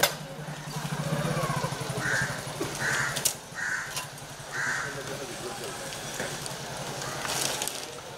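A bird calling four times in quick succession, harsh calls less than a second apart starting about two seconds in, over a steady low hum.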